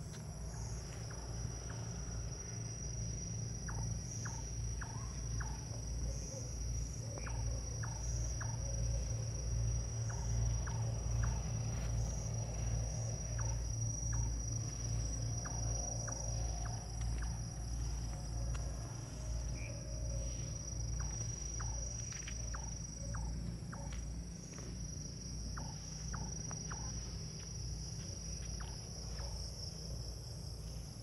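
Night-time chorus of crickets: a steady high-pitched trill throughout, with scattered faint clicks over a low pulsing rumble.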